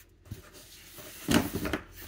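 A cardboard shipping box being handled and pulled open: a fairly quiet start, then a loud burst of rustling and scraping a little past halfway through.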